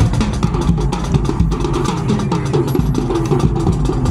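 High school marching band playing on the march: brass notes moving over a steady drum beat.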